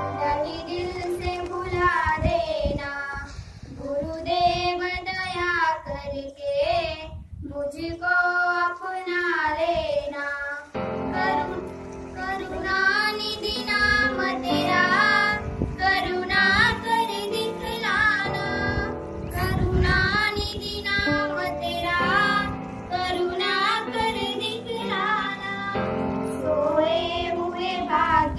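Schoolgirls singing a song into a microphone, the melody running on without a break.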